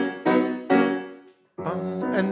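Grand piano played by the left hand alone, working through its arpeggio figures. Three notes are struck in quick succession in the first second, each ringing and dying away. After a short break the playing starts again near the end.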